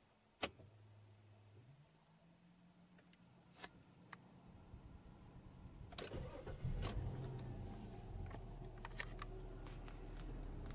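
Nissan Teana (J31) engine started from the driver's seat: a click, then a faint low hum that slowly grows. About six seconds in the engine catches and settles into a low, steady idle.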